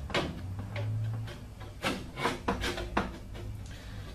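Galvanized sheet-metal duct piece being pushed and worked by hand into a metal slot on a furnace top: metal scraping and clicking against metal, with several sharp clicks in the second half.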